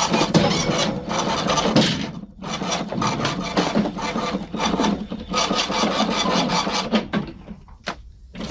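A rough rubbing, rasping noise made of quick, uneven strokes, with a few brief breaks.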